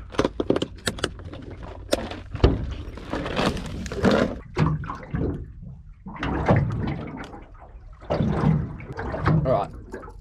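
Several sharp clicks from a plastic tackle box being snapped shut, then a single loud knock about two and a half seconds in. After that, handling noise and an indistinct voice over a low steady rumble.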